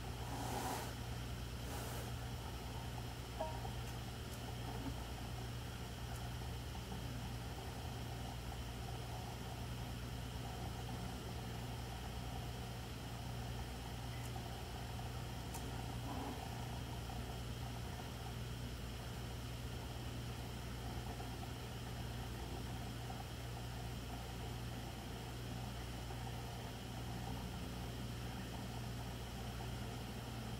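Steady low electrical hum, with a few faint clicks from a folding knife being turned over in the hands.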